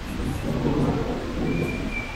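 Airport terminal background noise with a low rumble that swells during the first second and a half, and a faint steady high tone that starts near the end.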